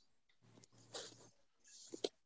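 Near silence: room tone, with a faint short breathy sound about a second in and another faint hiss near the end.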